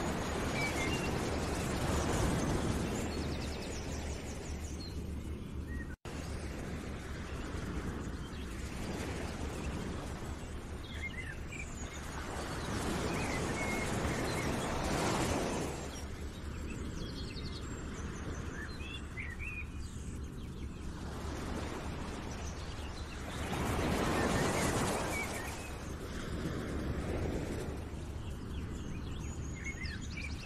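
Background nature ambience: a steady rushing noise that swells and fades every several seconds, with scattered small bird chirps over it. It cuts out for an instant about six seconds in.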